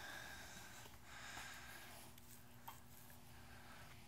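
Near silence: room tone with faint hiss and one small click about two-thirds of the way through.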